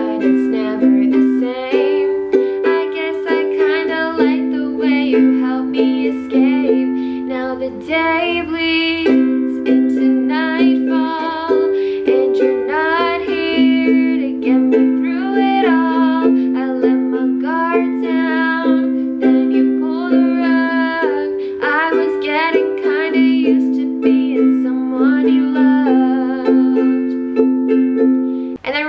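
A woman singing a slow ballad to her own ukulele, strumming the chords C, G, A minor and F in a steady rhythm, each chord held for about two seconds.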